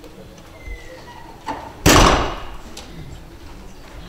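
A wooden door shut with one loud bang about two seconds in, ringing briefly in the room, with a softer knock just before it.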